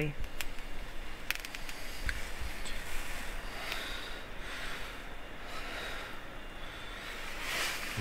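Quiet handling noises from work on a swivel seat base plate: a few light clicks and soft rubbing as grease is wiped over the metal turntable, with a short hiss near the end.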